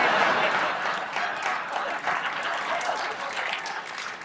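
Studio audience applauding, loudest at the start and slowly dying down.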